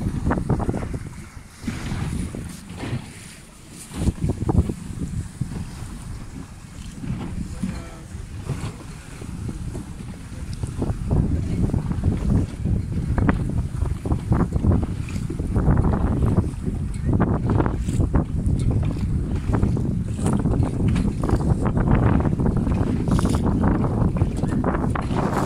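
Strong wind buffeting the microphone in gusts, louder from about eleven seconds in, over the splash of choppy water.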